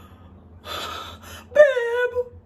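A woman's gasp: a breathy intake of breath about half a second in, followed by a short, high voiced exclamation that is held at one pitch near the end.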